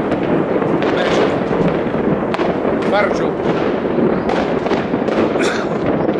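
Fireworks going off, several sharp bangs scattered over a steady crowd noise.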